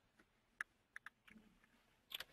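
Near silence on a phone line, with a few faint, short clicks about half a second and a second in.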